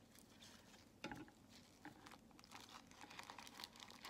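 Faint crinkling and rustling as gloved hands handle and scrunch a dyed paper coffee filter, with scattered small crackles and one slightly louder rustle about a second in.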